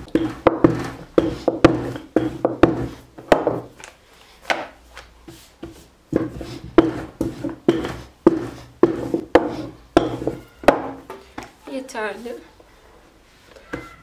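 Wooden rolling pin working thin dough on a floured wooden board: a rhythmic run of rolling strokes, each with a soft knock, about two a second, with a short lull around four seconds in.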